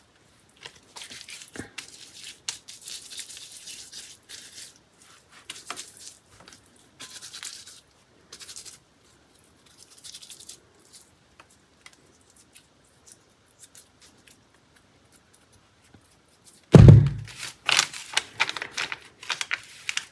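Soaked paper being rubbed and crumpled between the fingers, soft scratchy rustles as it breaks up into a net-like lace. Near the end a loud thump and louder rustling as it is laid out flat.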